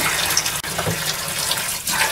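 Kitchen tap running steadily into a stainless steel sink.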